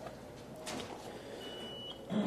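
Quiet meeting-room tone with a soft rustle a little over half a second in and a short, faint high-pitched beep about half a second long near the end.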